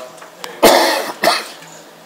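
A person coughing twice close by, two loud, short coughs a little over half a second apart.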